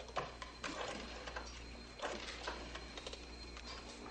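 Faint, irregular clicks and rustles of a desk telephone being handled and dialled, over a steady low hum.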